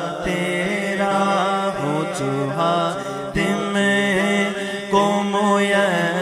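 A man singing a naat, an Urdu devotional song, in long wavering melismatic lines without clear words, over a steady low drone.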